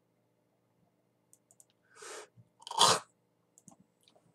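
A man's short breath noises: a soft one about two seconds in, then a louder, sharper one just under a second later, over faint room hum.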